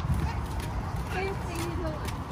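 Footsteps of several people in sandals and flip-flops walking on a concrete path, with soft slaps and scuffs over a steady low rumble and faint voices.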